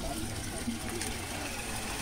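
Water running steadily from a water tanker's tap into a steel milk can, with people talking in the background.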